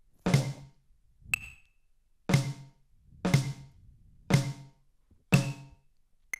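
A drum struck with drumsticks in single, evenly spaced strokes about one a second, each with a short ring; one stroke about a second and a half in is a thinner, sharper click.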